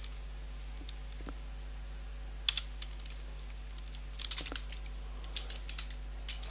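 Computer keyboard keys being typed in short bursts: a couple of keystrokes about two and a half seconds in, then quick runs of keystrokes from about four seconds on.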